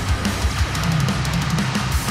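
Alternative nu metal song playing at full volume: heavy distorted guitars over a drum kit, with a quick run of drum hits in the second half.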